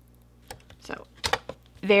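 A few short, light clicks and taps from a thick picture book with die-cut layered pages being handled and shut, spread over about a second; a woman starts speaking near the end.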